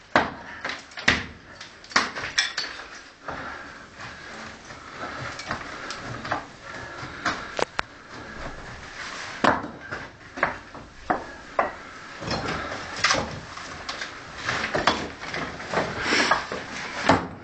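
Irregular sharp knocks and clatter of brick and loose rubble, several loud single strikes with quieter scraping and shifting between them.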